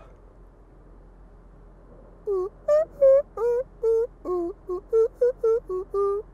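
A man singing a quick wordless tune in a high voice: about a dozen short notes that slide in pitch, starting about two seconds in, after a quiet start.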